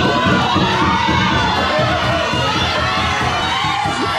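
A classroom of teenage students shouting and cheering together, many voices at once.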